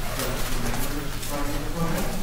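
Indistinct, muffled voices talking at a distance in a room, over a steady low hum.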